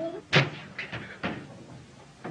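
A sharp knock or bang, followed by a few lighter knocks over the next second, the loudest at the start.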